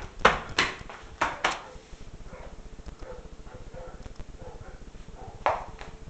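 Disposable lighter being flicked: a quick run of sharp clicks in the first second and a half, then another click about five and a half seconds in as the flame is relit.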